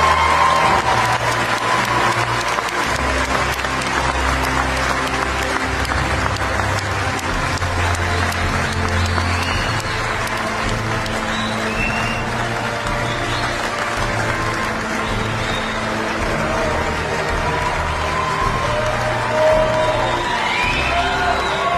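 A large audience applauding steadily, with music playing underneath on a low bass line.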